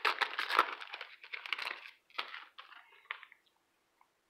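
A foil trading-card pack wrapper being torn open and crinkled by hand: a dense crackle for about two seconds, then a few short rustles that stop a little after three seconds in.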